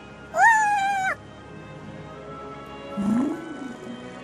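A high, meow-like call, rising and then falling and lasting under a second, over quiet steady background music. A fainter, lower wail rises and falls about three seconds in.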